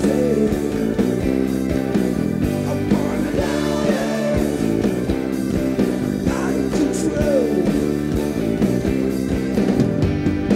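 Rock band playing live: electric guitars over bass guitar and drums, with bending guitar notes and a steady drum beat.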